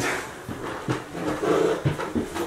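Footsteps climbing a flight of stairs, with a few sharp knocks spread across the two seconds, and a short pitched voice-like sound about one and a half seconds in.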